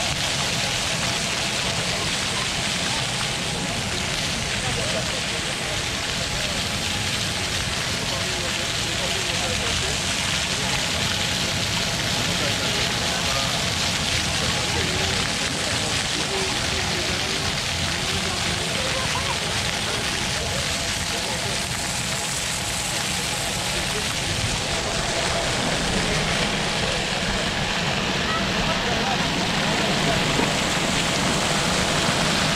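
Fountain jets splashing in a steady rushing hiss, with people's voices chattering and a low wind rumble on the microphone of a moving bicycle.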